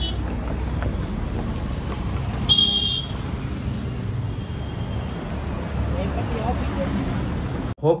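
Road traffic noise with a short vehicle horn toot about two and a half seconds in.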